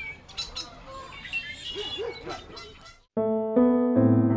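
Quiet outdoor ambience with birds chirping and a few short animal calls about two seconds in. Just after three seconds it cuts off abruptly and solo piano music starts with sustained chords.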